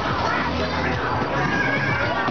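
Busy arcade din: electronic game-machine sound effects mixed with children's voices, over a steady low hum.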